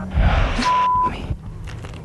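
A burst of rustling noise with a low rumble, cut by a steady half-second beep in the middle: a TV censor bleep covering a spoken swear word just before "me".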